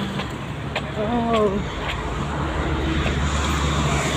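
Road traffic on the road beside the footpath: a motor vehicle's low engine drone over steady road noise, growing stronger and steadier in the second half.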